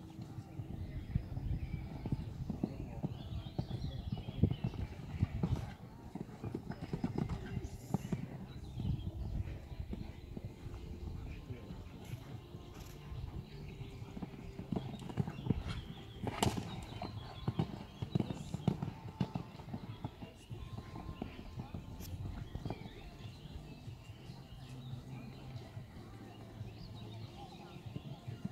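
Horses cantering on a sand arena: a continuous run of dull hoofbeats, with one sharp knock about sixteen seconds in.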